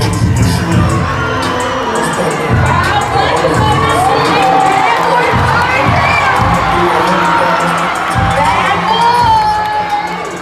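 Rodeo crowd in the arena stands cheering and shouting, with many high-pitched yells and whoops; one long high yell is held near the end.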